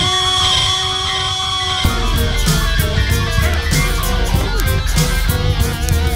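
Progressive rock instrumental with electric guitar. A chord is held for about two seconds, then the full band with bass and drums comes back in.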